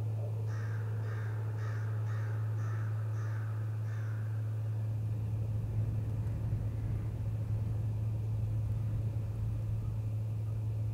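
A crow cawing about seven times in a quick series, roughly two calls a second, stopping about four seconds in. A steady low hum runs underneath, and a low rumble joins about halfway through.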